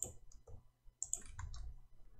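A few faint, scattered computer keyboard keystrokes and clicks.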